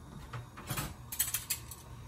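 Gas stove igniter clicking: a quick run of about six sharp clicks, starting under a second in.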